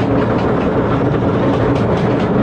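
Roller coaster train climbing a chain lift hill: the lift chain and its drive run with a steady rumble and hum, with regular clicking of the anti-rollback ratchet several times a second.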